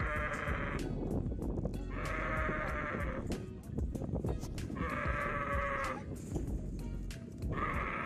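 A young dromedary camel bawling while men hold it down on the ground: long, drawn-out calls about every three seconds.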